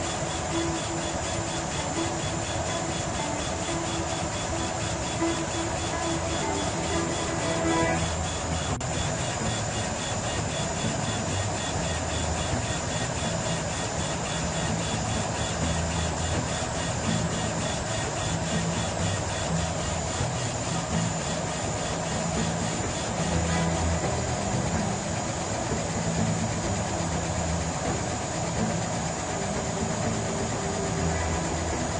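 Trotec SP-300 laser cutter running while it cuts plywood: a steady mechanical hum and hiss of fans and air with the head's motors moving, under background music. There is a brief click about nine seconds in.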